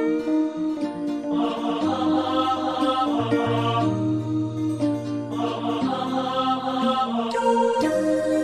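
Instrumental MIDI arrangement of a pop ballad played on synthesized instruments: a sustained melody line over held chords and low bass notes, without drums.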